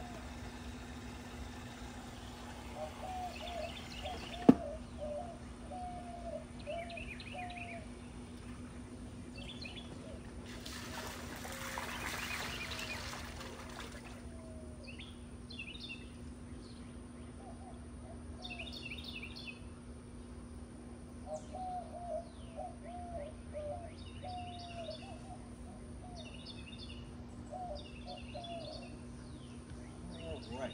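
Birds chirping outdoors in repeated short phrases, some low-pitched and some high, through most of the stretch. A single sharp click comes about four and a half seconds in, and a rush of hiss lasts about three seconds near the middle, over a steady low hum.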